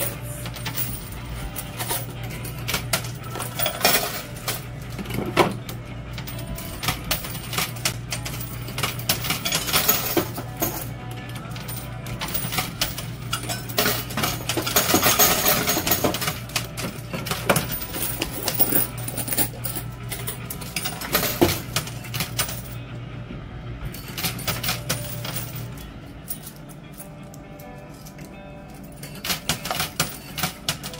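Quarters clinking and dropping in a coin pusher machine, with many short metallic clicks. A steady low hum runs underneath and stops near the end.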